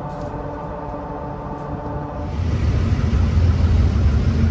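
Vehicle noise on a street: a steady hum of several pitches, then from about two seconds in a louder low rumble with hiss.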